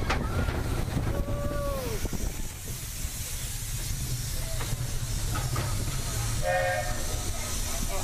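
Roller-coaster mine train rumbling steadily along its track, with a few falling squeals in the first two seconds. A hiss builds over the second half, and a short whistle sounds about six and a half seconds in.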